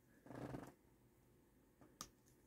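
Near silence, broken by one faint, short sip from a plastic drink bottle about a quarter second in.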